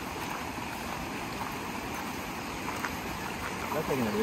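Fast-flowing monsoon river rushing steadily over its stony bed, a constant even wash of water.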